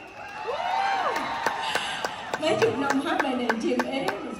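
Concert audience clapping, with single sharp claps close by rather than a dense roar of applause. A voice calls out with a pitch that rises and falls about half a second in, and people talk nearby in the second half.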